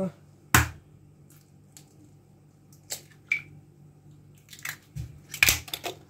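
An egg cracked on the rim of a bowl with one sharp knock, followed by a few faint clicks and a cluster of small knocks near the end as the shell is pulled apart and the egg drops into the bowl.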